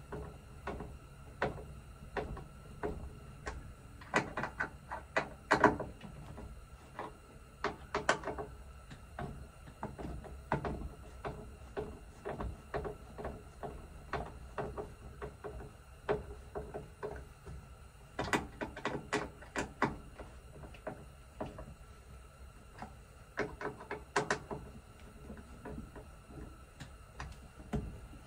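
Scattered light clicks and knocks, coming in clusters, as a plastic grab handle and its mounting screws are worked into the van's roof headliner by hand.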